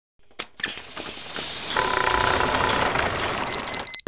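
Cartoon sound effect of a contraption being switched on: a click, then a rattling mechanical running noise that builds up over the first second and holds steady, with a hum joining in and a string of quick high beeps near the end.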